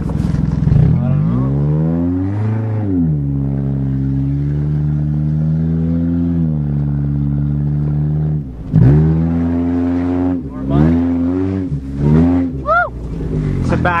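1992 Toyota Corolla's four-cylinder engine under load while being driven off-road: it revs up about two seconds in, holds a steady pull, eases off, then gives a run of short revs and lifts over the second half.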